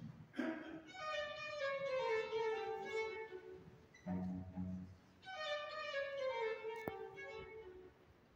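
String quartet playing a classical piece. A high violin line steps downward in pitch, answered by low notes, then the falling phrase comes again.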